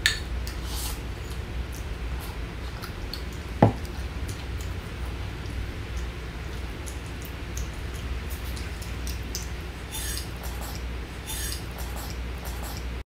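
Light clinks and scrapes of a wooden spoon against a ceramic plate as food is scooped up, with one sharper knock about three and a half seconds in. A low steady hum runs underneath.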